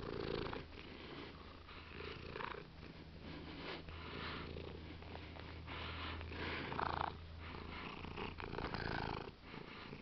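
Domestic tabby cat purring steadily right against the microphone, with scattered rustles of fur rubbing on the phone.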